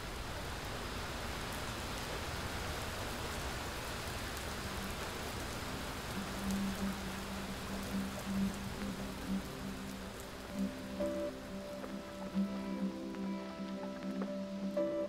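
Steady hiss of rain falling. About halfway through, soft music with held low notes fades in under it and grows.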